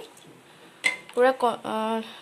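A wooden spatula is stirring thin kadhi in a metal kadai. The stirring is faint at first, and then the spatula strikes the pan once, a sharp clink with a short ring, under a second in.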